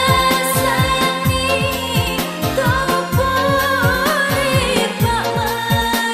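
Mandar-language pop song: a singer's melody with vibrato over keyboard backing, driven by a steady beat of low electronic drum hits that each drop quickly in pitch.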